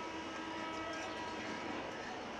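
Steady background rumble with a few faint held tones running under it, with no distinct events.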